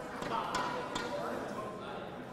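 Indistinct voices murmuring in a large hall, with a few short sharp knocks about half a second and a second in.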